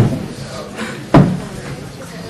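Two heavy, low thumps about a second apart, the start and middle of a slow, steady beat of single thumps that keeps going as the singing begins.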